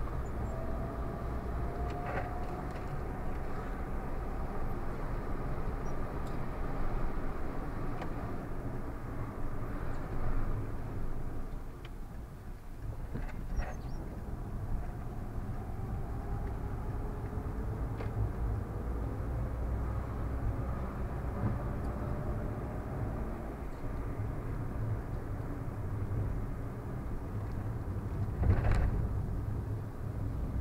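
Car cabin noise while driving in city traffic: a steady low engine and road rumble, with a whine that rises slowly in pitch twice as the car speeds up. A few short knocks stand out, the loudest near the end.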